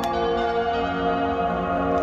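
Background music of bell-like tones: a chord is struck at the start and held, ringing steadily with little decay.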